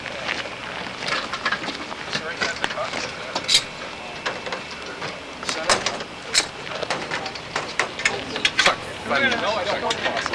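Scattered sharp knocks and clanks, a cluster of them near the end, over a steady background of onlookers talking outdoors.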